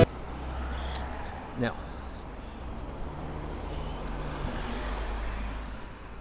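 Street ambience of road traffic, a steady low rumble, with a brief voice about a second and a half in.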